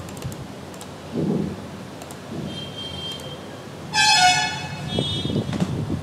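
A vehicle horn honks once, about a second long, about four seconds in.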